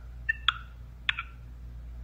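A pause holding a low steady hum with a few faint short clicks, about half a second and a second in.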